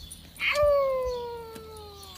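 Alaskan Klee Kai howling: one long howl that starts about half a second in and slides slowly down in pitch as it fades.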